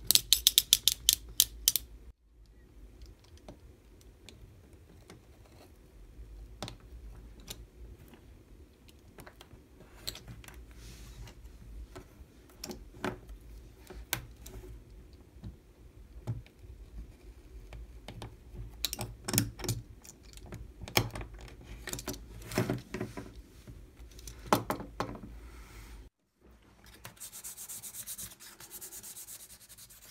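Rapid ratcheting clicks of a snap-off utility knife's blade being slid out, the loudest sound, lasting about two seconds. Then scattered small clicks and taps as the blade cuts a thin wooden moulding strip on a cutting mat, and near the end a soft rubbing of sandpaper on the wood.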